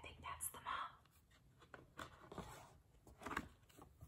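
Quiet handling of a paper picture book as a page is turned and opened out: soft rustles and a few small paper clicks. There is a brief faint whisper near the start.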